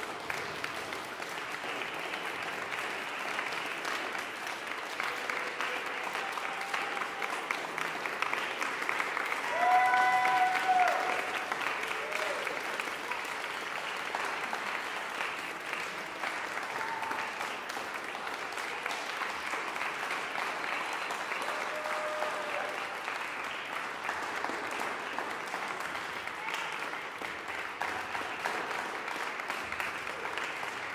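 Audience applauding steadily, a dense patter of many hands clapping. A brief pitched cheer rises above it about ten seconds in, the loudest moment.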